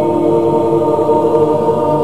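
A mixed choir of soprano, alto, tenor and bass voices chanting together, holding a steady sustained chord of several pitches without words.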